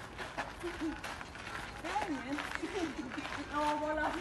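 Several women's voices calling out and chattering, with a held voiced note near the end, over faint scuffs of shoes on gravel.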